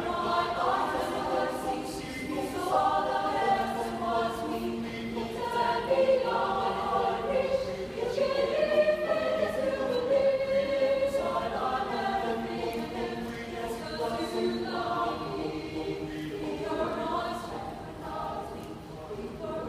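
Mixed chorale of women's and men's voices singing a cappella in held, sustained chords, with phrases changing every couple of seconds.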